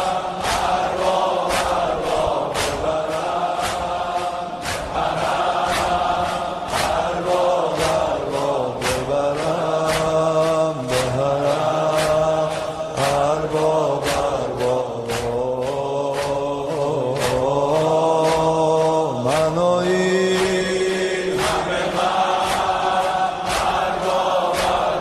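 A chanted Shia mourning lament (noha) over a steady beat of about two strikes a second, the singing voice gliding between long held notes. The chant breaks off briefly about three-quarters of the way through, then resumes.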